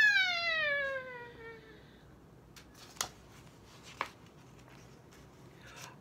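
A woman's long, drawn-out exclamation "ahh", acted as a cartoon character's cry of alarm, falling in pitch and fading away over about two seconds. After that it is quiet, with two faint clicks a second apart.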